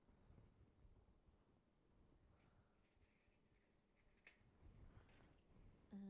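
Near silence: room tone with a few faint, soft handling sounds.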